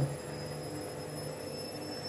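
Steady low hum with a faint high-pitched whine and a light hiss underneath: the background tone of a quiet room, with no distinct event.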